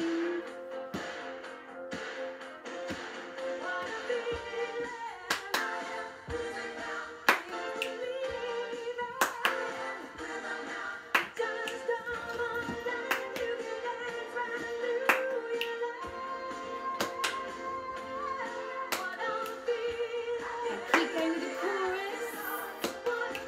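A children's song plays with singing, and sharp body-percussion hits land on the beat about every two seconds.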